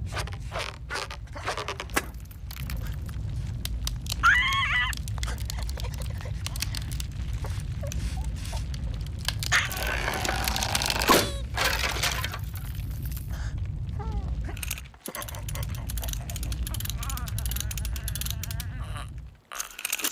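Cartoon bird character's strained squawks and grunts over a steady low rumble, with scattered clicks and cracks. The loudest cries come about four seconds in and again around ten to eleven seconds in. The sound drops out briefly around fifteen seconds in and again just before the end.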